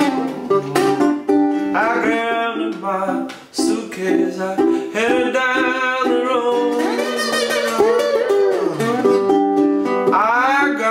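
Stansell ukulele played fingerstyle as a blues instrumental fill between sung lines: a run of picked notes, with notes gliding up and down in pitch towards the end.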